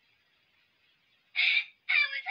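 Faint hiss, then about one and a half seconds in a single short, shrill, squawk-like cry from a person's voice, the start of an outraged outburst.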